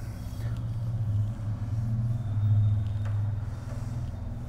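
A steady low rumble in the background, growing louder about two and a half seconds in, with a few faint ticks and soft rubbing from a cloth wiping a whiteboard.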